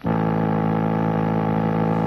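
Electronic buzzer tone from a 1960s videophone subscriber terminal: a steady, low buzz that starts abruptly and cuts off after about two seconds.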